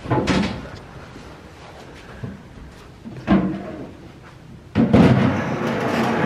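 A white vanity cabinet being pushed into place under a washbasin on a tiled floor: knocks and bumps at the start and about three seconds in, then a longer, louder stretch of scraping and bumping near the end as it goes in under the basin.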